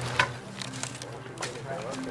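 Quiet talking in two short stretches over a steady low hum, with one sharp click just after the start.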